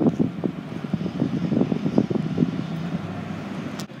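A pickup truck driving past on the street, its engine and tyres loudest early and fading away, with wind gusting on the microphone.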